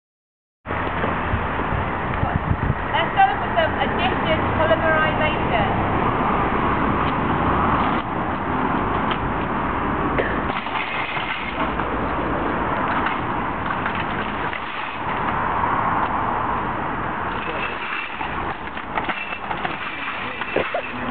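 Metal shopping trolleys rattling and rolling over wet tarmac as they are pushed and nested together into a line, over a steady background noise.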